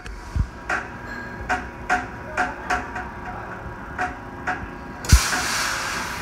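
Footsteps on a hard shop floor, a regular series of light knocks about two to three a second, then a single thump about five seconds in followed by a steady hiss.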